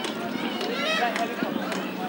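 A person's voice calling out without clear words, its pitch rising and then falling in the middle.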